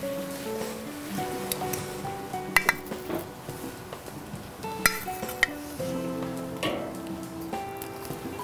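Background music with held notes, over several sharp metallic clicks of steel tongs tapping the barbecue's cooking grate as chicken drumsticks are laid on it.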